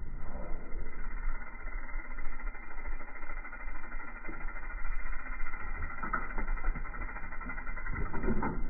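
Mountain bike rolling and jumping on a dirt jump line, with a steady rushing noise throughout and a few short knocks about six seconds in.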